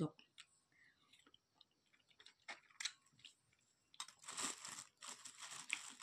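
Quiet eating of small crunchy fruit, with faint scattered clicks of chewing, then about two seconds of louder crinkly rustling near the end as the fruit is handled.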